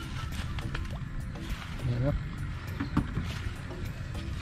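Eggplants being picked by hand into a plastic bucket: scattered light clicks and leaf rustling over a steady low rumble, with a brief voice sound about two seconds in.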